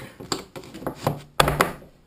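Plastic PVC pipe and fittings knocking and tapping on a wooden workbench as a fabric hammock is fitted onto its pipe frame, a few separate knocks with the loudest about one and a half seconds in.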